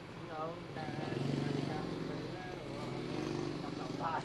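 Faint voices over the steady low hum of a running engine.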